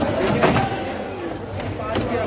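Background chatter of several voices in a busy fish market, with a sharp knock about half a second in.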